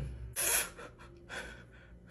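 A person's short, sharp gasp: one quick, noisy breath about a third of a second in, then a fainter breath.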